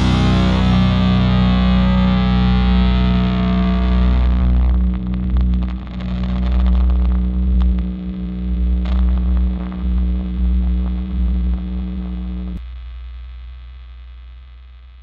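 The final chord of a black/doom metal song left ringing: a distorted, effects-laden electric guitar and a low bass drone sustain with scattered noisy crackles. About twelve and a half seconds in, the held note cuts off and what remains fades away.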